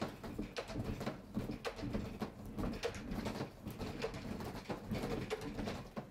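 A wooden cabinet being rocked side to side in a simulated earthquake, its glass sliding doors knocking and clattering irregularly in their tracks. The door with no seismic latch slides open as it shakes.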